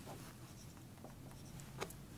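Marker pen writing on a whiteboard: faint scratching strokes, with one short sharp click near the end.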